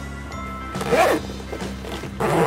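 Zipper running around a small hard-shell suitcase being pulled closed, with a short rasp about a second in, over steady background music.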